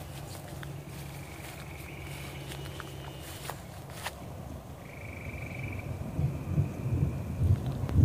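Two long, high pulsing trills from a small calling animal in the field, over a steady low rumble. From about six seconds in, a low, gusty rumble swells and grows louder toward the end.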